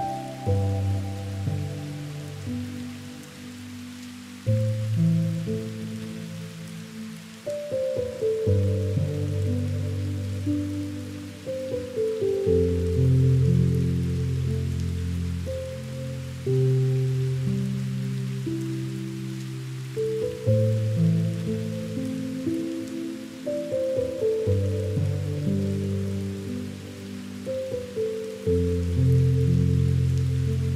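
Slow, soft instrumental relaxation music, sustained notes changing every few seconds in gentle phrases, with a steady patter of rain mixed in underneath.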